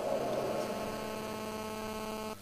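Steady electrical mains hum, a constant low buzz with many overtones.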